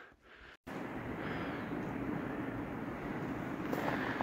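A brief drop-out, then a steady outdoor rushing noise with no clear single event, like wind or distant background noise on the microphone.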